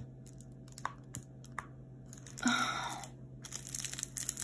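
Clear plastic protective film being peeled off the sticky poured glue of a diamond-painting canvas, clinging so that it has to be pulled forcefully. A few faint clicks, then a rustling, tearing crackle of plastic about two and a half seconds in, and more crackling near the end.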